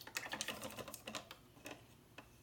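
A quick run of light, irregular clicks and taps from painting supplies being handled, thinning out towards the end.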